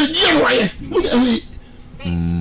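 Men's loud, animated studio talk: two voiced phrases, the first with a sharp, breathy exclamation, then a short lull near the end.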